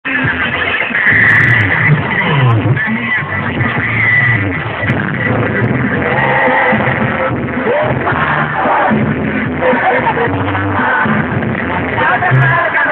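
Loud live banda sinaloense music over a PA: brass over a moving tuba bass line, playing without a break.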